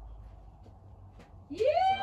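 A loud, long howl-like vocal call starts about one and a half seconds in, sweeping up into a steady high note, with a second, lower voice sliding underneath it. Before it there is only a faint low hum.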